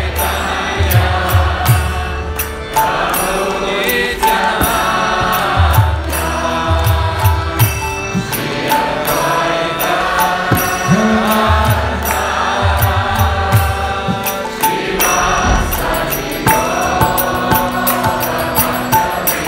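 Kirtan: a man chanting a devotional mantra to harmonium accompaniment, with hand cymbals ticking a steady beat and passages of low drum strokes.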